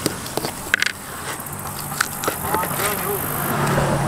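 Outdoor background with faint voices talking at a distance, scattered light clicks and taps, and a low steady hum near the end.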